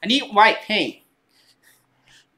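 A man's voice for about the first second, words not made out, then quiet.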